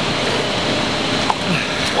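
Steady wash of indoor swimming-pool noise: water churning and lapping at the wall around a swimmer who has just come in from a rep.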